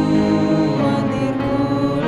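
A woman and a man singing a slow church hymn together, holding long notes that change about every second.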